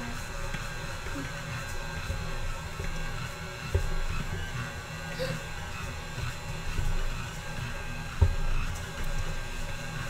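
Stand mixer running, mixing sticky pizza dough in its steel bowl, with background music over it. Two sharp thumps, about 4 and 8 seconds in; the second is the louder.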